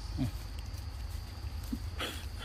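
A short low grunt, falling in pitch, about a quarter second in, and a second brief low grunt near the end. Both sit over a steady high insect drone and a low rumble of wind on the microphone.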